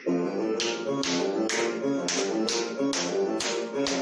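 Instrumental music with a melody, and sharp body-percussion claps and pats keeping time with it, about two a second.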